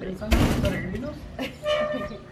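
A shop door being opened: a sudden thump about a third of a second in, with a low rumble that dies away quickly. A brief voice is heard near the end.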